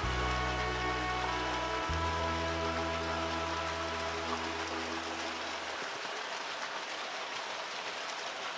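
Background music of long, sustained chords over low bass notes, the bass dropping away about six seconds in, with a steady rushing hiss underneath.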